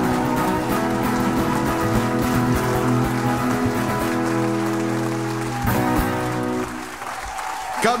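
Two acoustic guitars strum the end of a song, closing with a final chord struck a little under six seconds in that rings out briefly. Audience applause follows, from about seven seconds in.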